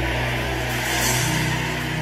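Background music of steady, sustained held chords with no speech, over a faint even hiss.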